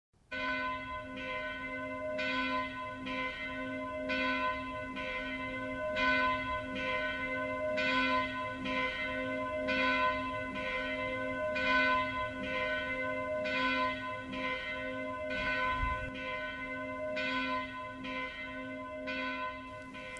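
Church bell ringing, struck at a steady pace a little faster than once a second, its tones ringing on between strikes.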